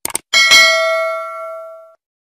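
Subscribe-button sound effect: a quick double mouse click, then a bright notification-bell ding that rings out and fades over about a second and a half.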